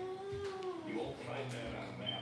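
Voices from a television programme playing on the TV, with one long drawn-out call that bends in pitch in the first half second.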